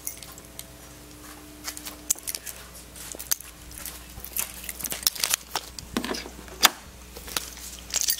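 Scattered clicks, taps and light rattles of a car's door latch, handle and keys being worked, with one sharper knock about two-thirds of the way through. A faint steady hum runs under the first two seconds.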